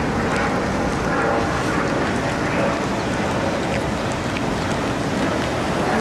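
Steady wind rushing over the camera microphone while walking outdoors, over a background of car traffic.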